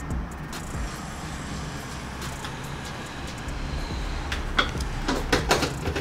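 A low steady hum, then a few light clicks and knocks in the last two seconds as a plastic scoop and a tub of whey protein powder are handled while powder is scooped into a bowl.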